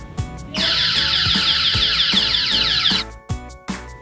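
Pkaboo anti-drowning and distance alarm unit sounding a loud, high-pitched, rapidly warbling electronic alarm, starting about half a second in and stopping about three seconds in: the alarm signalling that the child's tag has gone beyond the set distance. Background music with a steady beat runs underneath.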